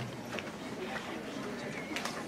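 Footsteps of shoes on the stage floor, a few irregular light clicks, over a low murmur of voices from the audience.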